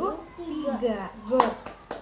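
Three sharp hand claps in quick succession in the second half, over a woman's speaking voice.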